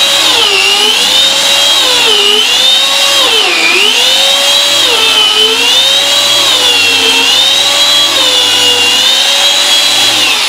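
Electric carpet shearing machine running at full speed with a high motor whine, its pitch dipping and recovering every second or two as it is pushed and wiggled through the carpet pile, digging into the carpet.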